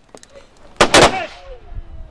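Ceremonial rifle salute: a squad of assault rifles fired into the air together about a second in, the shots landing slightly ragged as two close cracks with a fading echo after.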